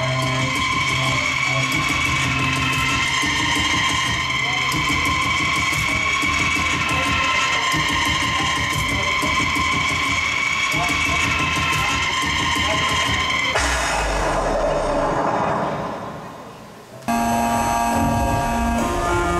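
Live industrial band music with held, steady tones over a dense mix. About thirteen and a half seconds in it gives way to a noisy wash that fades down, then loud music cuts back in abruptly about a second before the end.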